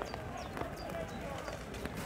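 Outdoor ambience of distant voices calling and talking, over a steady low rumble, with scattered short high chirps.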